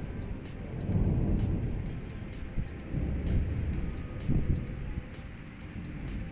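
Thunder rumbling low, swelling and easing off several times.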